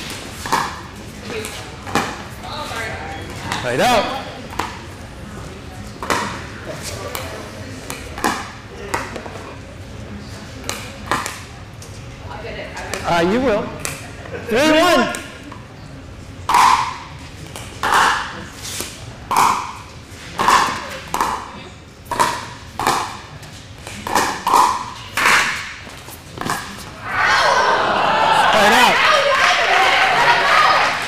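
Pickleball paddles striking the hard plastic ball in rallies, a string of sharp hollow pops about a second apart, ringing in a large hall. Near the end a burst of crowd noise rises and covers the hits.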